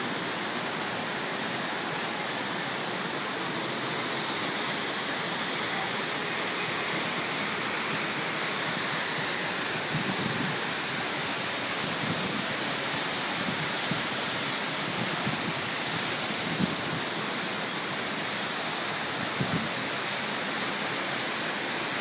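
Waterfall pouring down a rock face into a pool: a steady, unbroken rush of falling and splashing water.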